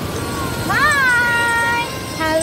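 A high voice calls out in one long note that swoops up and then holds, over the steady wash of surf.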